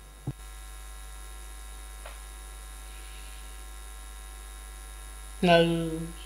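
Steady electrical mains hum in the audio feed, with a brief click just after the start. Speech resumes near the end.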